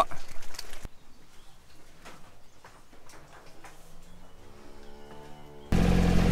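Quiet cattle yard with faint knocks, and a drawn-out low moo from a heifer near the end. Just before the end a utility vehicle's engine cuts in, running steadily.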